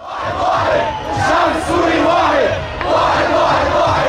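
A large crowd shouting and cheering, many voices overlapping in a loud, continuous din that starts abruptly.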